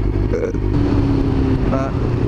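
Yamaha R6 inline-four engine running at a steady, even cruise, heard through a helmet-mounted mic with wind noise over it.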